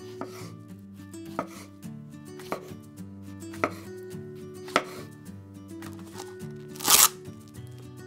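Kitchen knife cutting the hulls off strawberries on a bamboo cutting board: four crisp knocks of the blade on the board about a second apart, over soft background music. Near the end comes a brief, louder burst of noise.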